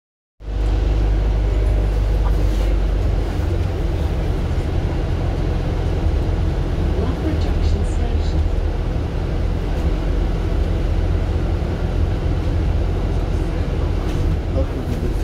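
Steady low rumble of a double-decker bus's engine and running gear, heard from inside the upper deck while the bus drives along.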